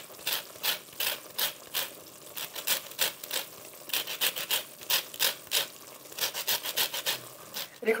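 Wooden spoon scraping and stirring toasted coarse semolina in hot oil in a nonstick pot, in short repeated strokes about three a second.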